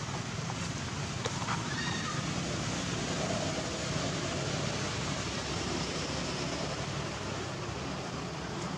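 Steady rushing outdoor background noise, with a few faint brief chirps and clicks over it.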